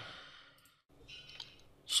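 A person's audible exhale into a close microphone, a soft breathy sigh lasting under a second, then fainter breath noise.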